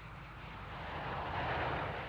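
Jet noise from a low 300-knot flypast of the Panavia Tornado prototype and its chase aircraft: a rushing sound that grows louder, peaking about one and a half seconds in.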